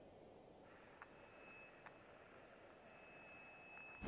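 Near silence: faint hiss with two soft clicks and a faint, thin, steady high tone.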